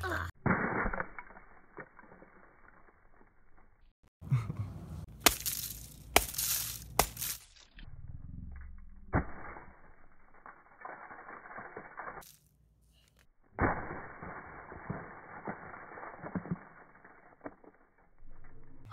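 A sledgehammer smashing gingerbread houses on concrete: repeated blows with the cracking and crunching of gingerbread and candy, in several short bursts.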